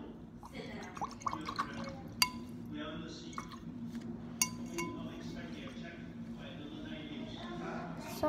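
Three sharp, ringing clinks of something hard against glass or china, about two seconds in and twice more past the middle, over a low steady room hum.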